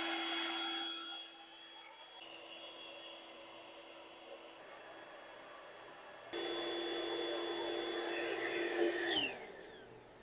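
Intex airbed's built-in electric pump running steadily as it deflates the mattress, a steady motor hum with airy hiss that goes quieter for a few seconds in the middle. About nine seconds in the pump shuts off and its pitch falls away as the motor spins down.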